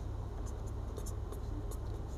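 Felt-tip marker writing on paper: a series of short, faint strokes over a steady low hum.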